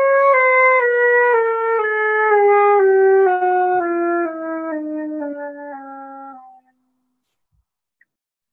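Concert flute playing a slow descending chromatic scale of about an octave, from C down to the low C at the bottom of the flute. The notes are played as a tone exercise, blowing the air down more. The tone is strong in the upper notes and grows softer in the low register, then stops.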